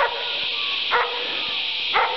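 Footsteps of someone walking over a grass pasture: a soft knock about once a second, over a steady high-pitched hiss.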